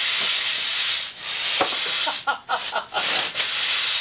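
Compressed air hissing loudly as it feeds the air cylinder of a homemade pneumatic bar stool, pushing the seat up on its post. The hiss dips about a second in, comes in several short spurts a second later, then runs steady again.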